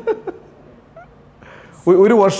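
A man's voice and laugh trail off, followed by a pause of faint room tone with one faint, short rising squeak about a second in. A man's speech starts again just before the end.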